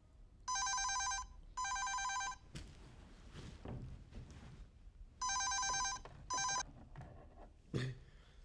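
Cordless telephone ringing with an electronic trilling tone, two double rings; the last ring of the second pair is cut short as the phone is picked up. Bedclothes rustle faintly between the rings.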